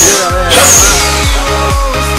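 Electronic dance music with a steady beat, about three to four thumps a second, and a high sweeping sound that falls away about half a second in.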